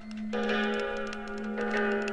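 Music from a vinyl record: a steady low drone, with sustained pitched notes entering about a third of a second in and again near the end, over fast, even ticking.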